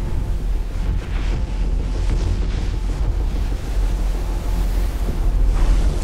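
Heavy ocean surf: big waves breaking and whitewater churning, a dense, steady noise with a strong low rumble that grows louder near the end.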